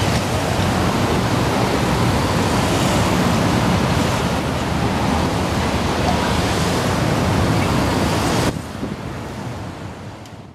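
Steady rushing noise of wind on the microphone mixed with road traffic passing close by. About eight and a half seconds in it drops suddenly, then begins to fade out.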